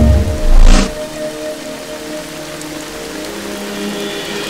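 Heavy rain falling steadily under soft background music. A loud swell in the music in the first second drops away, leaving the rain and a quiet held chord.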